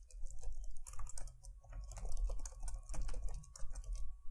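Typing on a computer keyboard: a quick, uneven run of key clicks as a line of code is entered.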